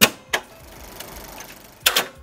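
Cassette-deck sound effect: a sharp click at the start and another about a third of a second in, then a faint tape hiss, then a further click near the end.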